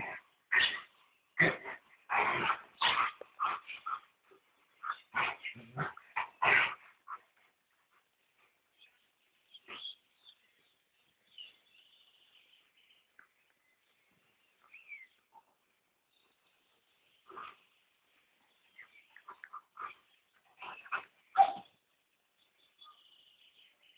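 Slovak Cuvac dogs, an adult and a puppy, play-fighting and vocalising in short, sharp bursts: a dense run over the first seven seconds, a quieter stretch, then another cluster just before the end.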